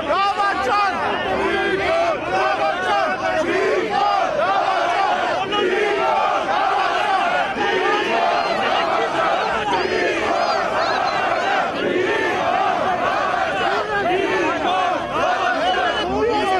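A crowd of protesters and police shouting over one another during a scuffle. It is a dense, unbroken din of raised voices with no single voice standing out.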